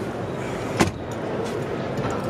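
An SUV's fold-down rear seat back being raised by hand, with one sharp clunk about a second in as it latches, over steady exhibition-hall background noise.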